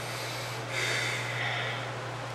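A man's long breath out, a snort-like exhale lasting about a second from a third of the way in. A steady low hum runs underneath.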